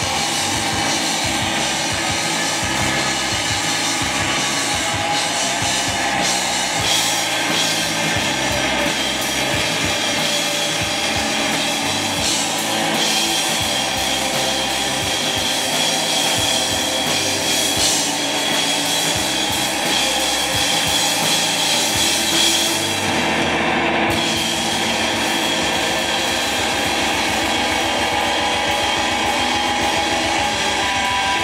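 A rock band playing live: a Stratocaster-style electric guitar over drums and bass guitar. A high note is held through the middle stretch, and the texture shifts for a moment near the end.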